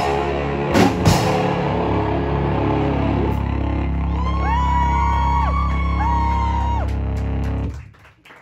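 A live rock band with electric bass, guitar and drums ends a song. Two final hits come about a second in, then a chord is held and rings. In the second half, higher guitar tones slide up and down over the held chord, and everything stops abruptly just before the end.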